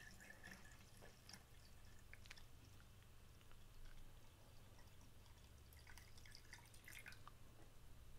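Water poured slowly from a plastic beaker into a metal tin can, heard only faintly as scattered small drips and splashes.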